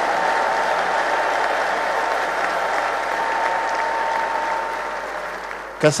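Audience applauding steadily, fading slightly near the end.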